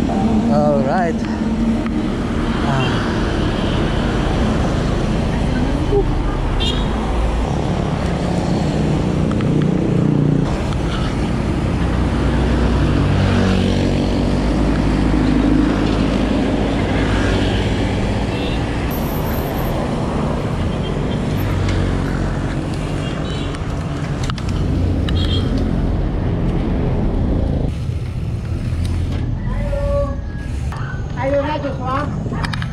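Steady wind rush on a handlebar-mounted action camera's microphone while riding a mountain bike along a city road, mixed with passing traffic, including a truck going by. The noise eases slightly near the end.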